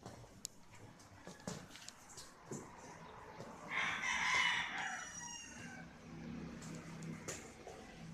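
A dog's squeaky rubber toy being squeezed in its jaws, giving one long, loud squawk of nearly two seconds about four seconds in.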